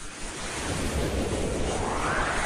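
Whoosh sound effect: a swelling rush of noise over a low rumble, with a sweep that rises in pitch from about a second in.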